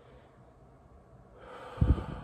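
A man's audible in-breath through nose and mouth, starting about a second and a half in after a quiet pause and ending with a brief low puff of breath against the microphone.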